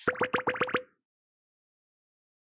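Cartoon pop sound effects for an animated end screen: a quick run of about six pops, each rising in pitch, over less than a second, as the icons appear.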